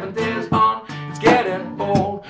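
Acoustic guitar strummed rhythmically in a slap-guitar style, chords broken by sharp percussive hits on the strings.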